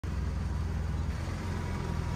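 Small engine of an auto-rickshaw (tuk-tuk) running steadily while riding in traffic, heard from inside the open cab as a low drone with road and traffic noise.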